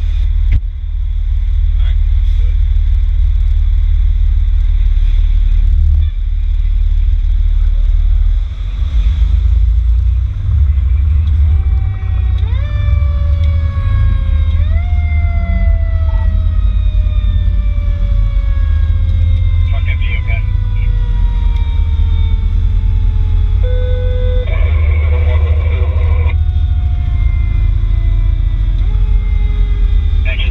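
Fire rescue truck driving out on an emergency call, its engine and the wind on the outside camera making a heavy low rumble. From about halfway through, the siren comes on, each time rising quickly in pitch and then falling slowly, three times, with a few short harsh bursts between.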